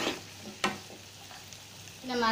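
Cubed potatoes and shallots sizzling softly in oil in a non-stick pan as they are stirred, with one sharp knock of the wooden spatula against the pan a little over half a second in.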